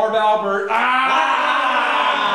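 Several men yelling together in long, drawn-out cries, their voices overlapping; the sound grows fuller less than a second in as more voices join.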